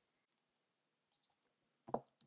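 Near silence with a few faint computer clicks, the loudest one just before the end.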